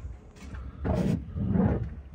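Two brief scraping and handling noises from a hand working over a car's spare tyre in the trunk well, about a second in and again past halfway, as the tyre is checked for a puncture.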